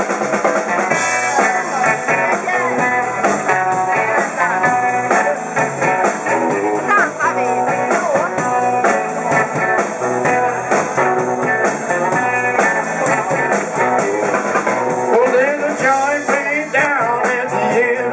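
Live blues band playing loud: electric guitars, electric bass and a drum kit keeping a steady beat.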